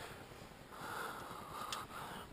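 Faint, steady rushing of a wood fire burning in the small Kimberly stove's firebox with its draft control turned down, swelling softly about a second in.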